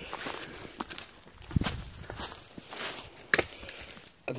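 Footsteps pushing through leafy woodland undergrowth, uneven and irregular, with a few sharp cracks.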